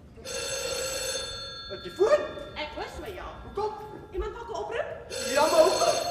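Telephone bell ringing twice, each ring about a second and a half long with a pause of several seconds between, while voices talk between and over the rings.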